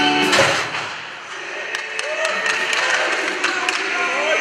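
Background music cuts off about half a second in. It gives way to ice-rink sound: several people's voices talking and calling, with scattered sharp taps of hockey sticks and pucks on the ice.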